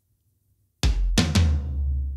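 Soloed recorded tom-tom fill: a quick run of about four tom hits a little under a second in, leaving a deep, low ring. The high rack tom is pitched down almost an octave (−1195 cents) with the Torque pitch-shifting plugin, so it sounds lower than the floor tom.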